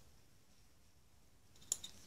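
Near silence at first, then a few light clicks near the end as the steel magneto cam rings are handled together.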